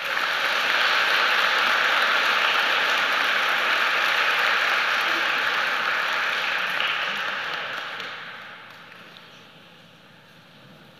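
Audience applauding, steady for about seven seconds and then dying away.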